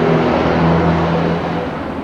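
Street traffic: a motor vehicle's engine running close by with a steady low hum over road noise, fading away near the end.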